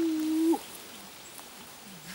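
A single held vocal note, steady in pitch, lasting about half a second at the start and dropping away as it ends.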